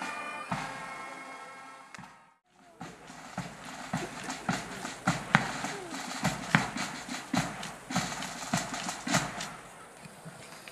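Military band music, steady held tones, fades out over the first two seconds. After a short break, a run of irregular sharp clicks and low thuds follows as ranks of troops move into position on the parade ground.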